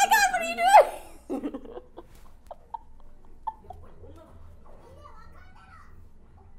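A woman's loud, high-pitched squeal of shocked delight, wavering up and down for about a second, then a short lower exclamation. After that there are only faint scattered sounds.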